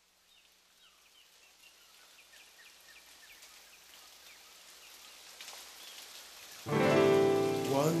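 Rain-like noise fading in slowly from near silence, with faint small chirps over it, as the intro of the song begins. About two-thirds through, a loud sustained chord of the song comes in suddenly.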